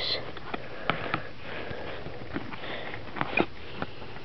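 Trading cards being handled and slid against one another: scattered light clicks and rustles of card stock, with a short sniff right at the start.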